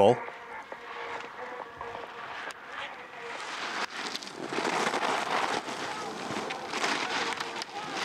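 Giant slalom skis carving and scraping on hard-packed snow: a hiss that swells about halfway through and stays up as the skier passes close to the microphone.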